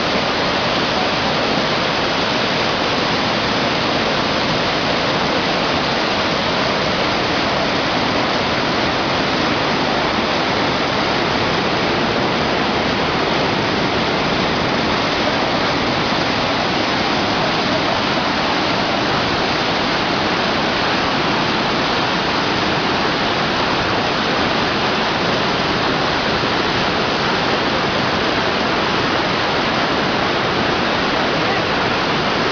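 Steady roar of a swollen, fast-flowing river in flood, a dense rushing noise with no breaks.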